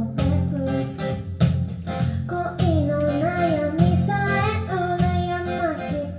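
A woman singing live while strumming an acoustic guitar, with long, wavering held notes in the second half.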